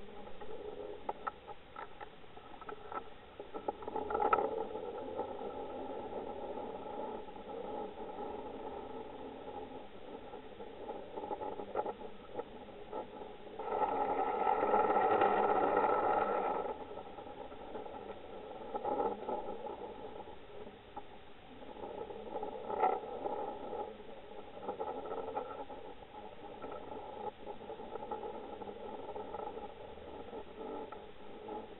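Underwater noise picked up by a submerged camera: a steady hum with scattered clicks and knocks. A louder rushing stretch of about three seconds comes midway.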